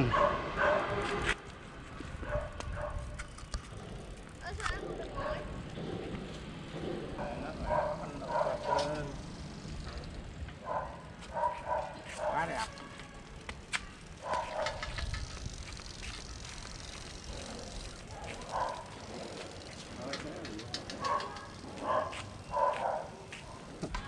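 A homemade tandem bicycle, built from two old bicycles, ridden along a concrete lane: faint rolling with occasional clicks, under short scattered bursts of distant voices.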